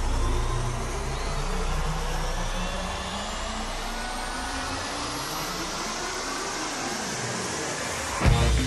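Electronic riser from a concert sound system: a hissing wash with several whistling tones gliding slowly upward in pitch, while a low drone underneath fades away about halfway through.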